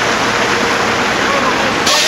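A Scottsdale Trolley bus passing close by: a steady rushing of engine and tyre noise with a faint steady hum.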